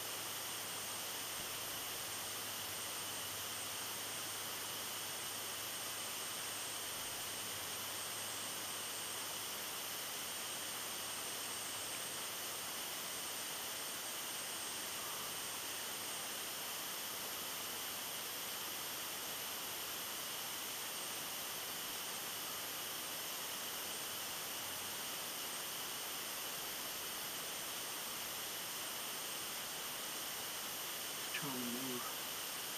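Steady hiss of quiet outdoor ambience with faint, unchanging high-pitched bands and no distinct events.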